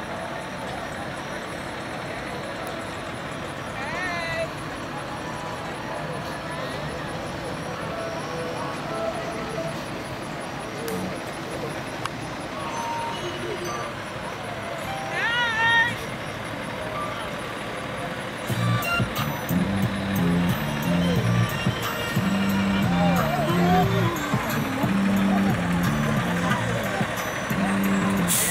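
Parade-route crowd noise: voices and slowly passing vehicles. Music with a bass line comes in about two-thirds of the way through and gets louder.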